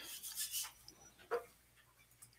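A quiet pause with faint, soft rubbing sounds and one short click about a second and a half in.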